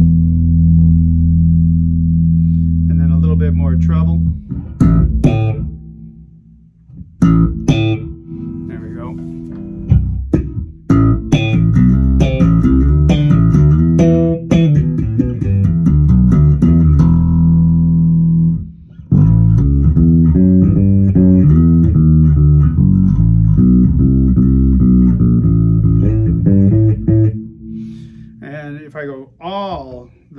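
Five-string MG Bass JB1 neck-through electric bass with Bartolini pickups and preamp, played fingerstyle through a Demeter bass head and Ampeg cabinets, with the preamp's bass control turned back up. A long held low note opens, then after a short gap with a few plucks come busy runs of notes, broken briefly about two-thirds of the way through, and the playing thins out near the end.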